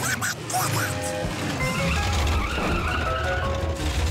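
Cartoon car sound effect: a low engine rumble comes in about a second and a half in, mixed under background music with held notes.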